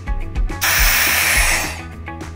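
Air hissing into a cookie-jar vacuum chamber as its valve is opened, starting about half a second in and tapering off after about a second as the chamber returns to normal air pressure. Background music plays underneath.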